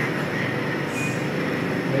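Liposuction suction machine running, a steady rushing noise as the melted fat is drawn off through the cannula, with a brief faint whistle about halfway through.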